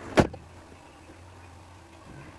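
Inside a car: one sharp knock, then a steady low hum of the vehicle.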